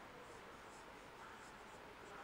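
A marker writing on a whiteboard: a run of short, faint strokes in a quiet room.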